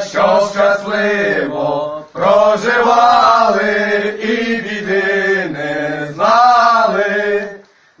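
A small group of men singing an old Ukrainian Christmas carol (koliadka) unaccompanied, in long held phrases. There is a short breath break about two seconds in, and the singing dies away just before the end.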